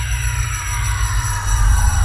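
Intro sound design for a logo sting: a slowly falling multi-tone sweep over a deep, pulsing bass rumble, which swells louder about one and a half seconds in.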